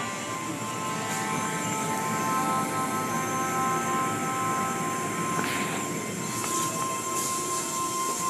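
Music playing over the steady mechanical running of an automatic car wash, with a short swish about five and a half seconds in.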